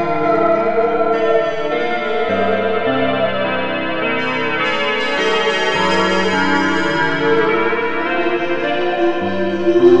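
Slow dark ambient music: layered sustained chords, with the low note shifting every couple of seconds.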